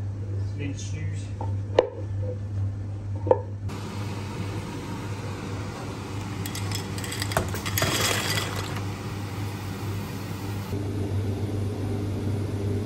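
Home cooking sounds over a steady low hum: a wooden spoon stirring sauce in a pot, knocking sharply against its side twice, then a longer clatter about seven seconds in as cooked pasta is tipped out of a bowl.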